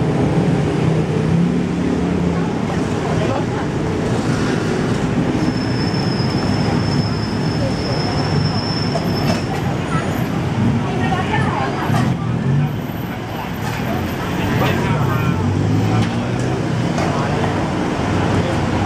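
Street traffic noise from slow-moving cars and motorbikes, a steady low rumble of engines, with the indistinct chatter of passers-by. A thin, steady high whine sounds for a few seconds near the middle.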